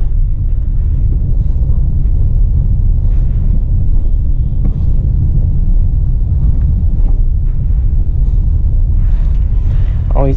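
Steady low rumble inside a Hyundai Creta's cabin while it drives along a street: engine and tyre noise.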